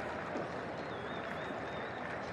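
Steady background hubbub of a crowded indoor show arena, with a faint wavering high-pitched tone for about a second near the middle.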